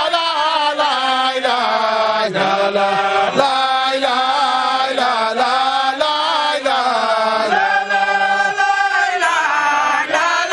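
Islamic devotional chanting: a continuous melodic chant with long held, wavering notes that slide from one pitch to the next.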